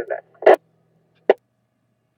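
Amateur radio receiver audio: the tail of a voice transmission in the first moment, then two short sharp bursts, a loud one about half a second in and a smaller one a little over a second in, before the audio cuts to silence as the squelch closes.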